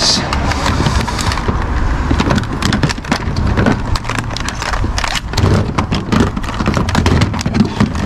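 Plastic electronics (game controllers, phones, chargers) being picked up and knocking against each other and the plastic bin lids: irregular clicks and clatters over a steady low rumble.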